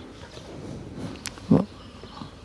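A single short, low animal call about one and a half seconds in, over faint farmyard background noise.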